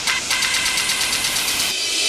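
Electronic dance music in a breakdown: a steady hiss-like noise wash with faint quick ticks and no kick drum.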